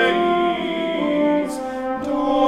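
French horn playing a slow line of held notes, accompanying a choir singing a choral anthem.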